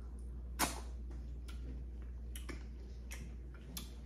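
Eating crab legs: a few sharp, irregular clicks and cracks from chewing and from the crab shell being worked apart, the loudest about half a second in, over a low steady hum.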